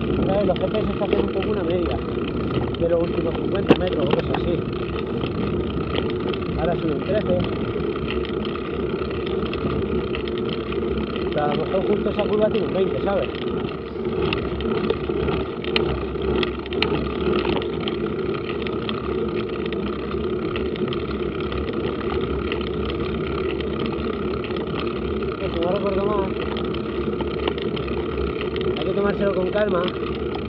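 Steady, muffled rush of wind and tyre noise picked up by a camera mounted on a mountain bike riding along a paved road, with short faint snatches of voice here and there.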